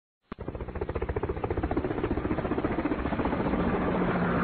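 An engine running with a rapid, even pulsing of about ten beats a second, starting abruptly with a click.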